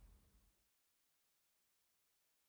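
Near silence: faint room tone that fades out within the first half-second, then dead silence.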